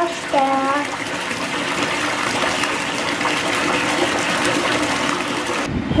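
Bath tap running into a filling bathtub: a steady rush of pouring water that stops abruptly near the end.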